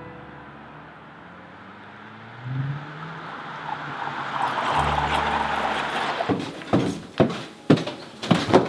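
A car passes on the street, its engine and tyre noise swelling to a peak about five seconds in and fading away. Near the end come several heavy thumps, footsteps coming down a wooden staircase.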